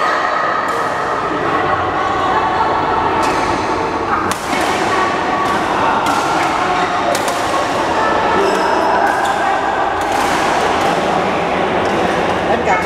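Badminton rackets hitting a shuttlecock in a rally, a few sharp smacks a second or two apart. Under them runs a constant hubbub of many voices, echoing in a large sports hall.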